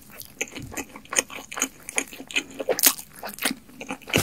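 Close-miked eating sounds: a person biting and chewing fried fast food, with irregular crisp crunches and mouth clicks, the loudest about three seconds in.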